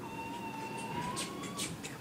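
A faint, steady high-pitched tone that rises slightly in pitch and stops after about a second and a half, with a few light rustles.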